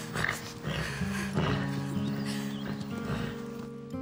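Background music with held tones, over a few hoof steps of a horse being led at a walk on dirt.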